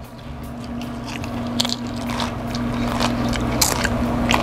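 Tortilla chip loaded with queso being bitten and chewed: a string of short crisp crunches over a steady low hum.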